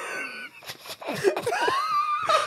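Breathy, wheezing laughter from several people, with short voice fragments and a high drawn-out vocal cry near the end.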